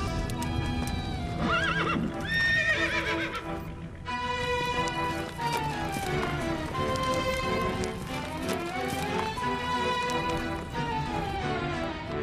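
Horses galloping with steady hoofbeats, and one horse giving a long, quavering neigh about two seconds in, all under dramatic soundtrack music with held and sliding tones.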